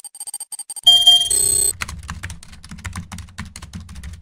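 Electronic sound effects of an animated title screen: rapid short beeps ticking at a fixed pitch as a progress bar fills, then a loud electronic chime about a second in, then a fast run of keyboard-like clicks over a low thudding as text appears.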